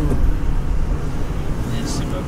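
Steady low rumble of a car's engine and road noise heard from inside the cabin while driving.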